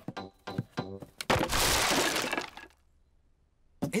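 Cartoon crash sound effect: a loud clattering, breaking noise about a second in that dies away over a second and a half, followed by a moment of near silence.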